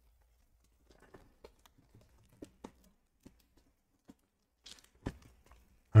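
Faint scattered plastic clicks and rustling as a thick PSA graded card slab is handled and slid into a plastic bag, with a sharper click about five seconds in.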